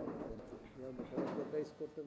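Faint, indistinct voices of men talking among themselves, low and unclear under the room's background.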